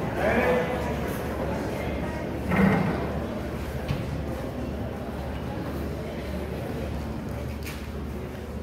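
Indistinct voices of spectators in a hall, with two short shouts in the first three seconds over a steady low hum of the room.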